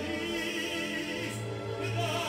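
Operatic singing with orchestral accompaniment, several voices holding sustained notes with vibrato over a steady orchestral bass, played from a vinyl record on a turntable.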